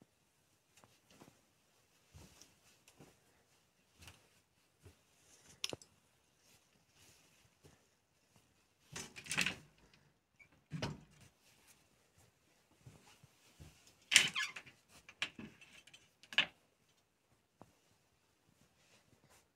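Scattered small knocks, footsteps and handling noises in a small room. A wooden interior door is handled and opened about halfway through, followed a few seconds later by the loudest clatter and rustle.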